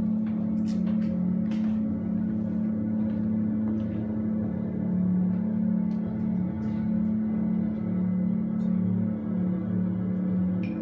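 A low, steady drone held on two close pitches that waver slightly against each other, like ambient drone music, with a few faint clicks over it.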